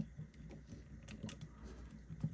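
Faint, scattered clicks and taps of hard plastic as small toy pizza discs are pushed into an action figure's pizza-shooter launcher.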